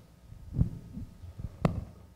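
Handheld microphone being handled and laid down on a table: a few low thumps, then a sharp knock as it touches down a little past halfway.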